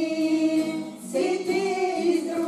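A small group of women singing a song together in unison to a strummed acoustic guitar, with a brief breath between sung lines about a second in.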